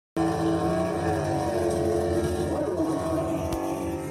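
A car engine running steadily, with a brief shift in pitch near the middle. It starts and cuts off abruptly, as an edited sound clip.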